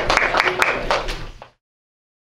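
A small audience clapping amid some chatter, fading out to silence about one and a half seconds in.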